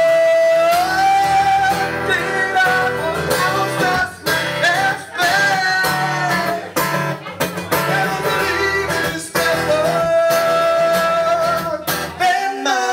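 Live acoustic band: an acoustic guitar strummed under male voices singing, with a long held note near the start that slides up, and another long held note near the end.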